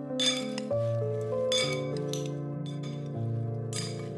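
Metal spoon clinking and scraping against a glass bowl as potato chunks are tossed, in three short spells, over background music.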